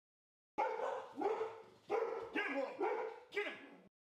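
A dog barking, about six barks roughly half a second apart.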